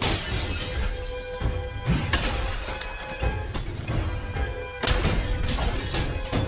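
Film sound effects of glass shattering and crashing: a sudden crash at the start, then more crashes about two seconds in and again near five seconds, over a music score.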